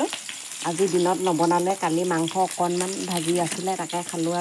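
A person talking in a fairly level voice, over a low sizzle of food frying in a pan on a wood fire.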